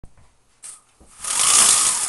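Rustling handling noise as the camera is moved and brushed against: a short brush about halfway through, then a louder rustle that swells near the end.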